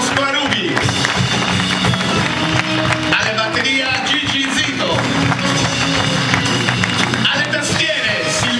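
Live band playing an instrumental passage: acoustic guitar, electric bass, drum kit and keyboard, at an even, steady level.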